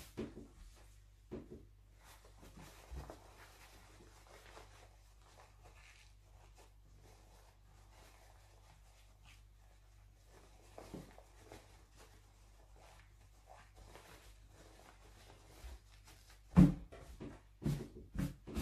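Faint rustling and soft handling knocks of a sewn print-fabric piece being turned right side out by hand, over a low steady hum. Near the end comes a single sharp thump, the loudest sound, as the piece is pressed flat onto the table.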